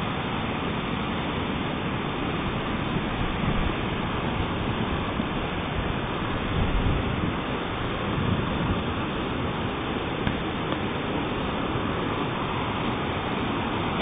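Waterfall rushing: a steady, even roar of falling water with no let-up.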